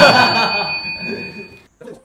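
Men laughing loudly, overlaid with a bell-like chime that rings and fades out over about a second and a half. The chime is an edited-in sound effect.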